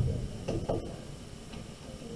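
A soft low knock, then a few faint light clicks over low room noise.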